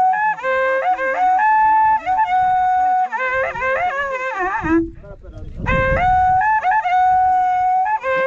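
An Andean cow-horn trumpet (corneta) is blown in long, held, piercing notes, stepping and sliding between a few pitches. The playing breaks off briefly about five seconds in, when a short low rumble is heard, then the horn resumes.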